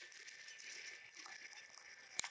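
Screwdriver turning one of the end pivot screws on a Stratocaster tremolo bridge, screwing it down: faint, irregular small clicks and scraping over a steady hiss.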